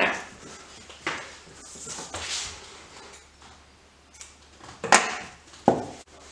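Scissors cutting cotton string from a spool, with light handling clicks and rustles. The loudest is a sharp click about five seconds in, followed shortly by a duller knock.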